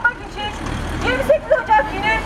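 A road vehicle rumbling past, its low engine sound building from about half a second in, under voices chanting through a megaphone.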